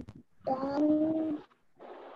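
A child's voice through a video call, holding one drawn-out hesitant 'mmm' or vowel at a steady pitch for about a second, followed near the end by a stretch of hiss from the call's microphone.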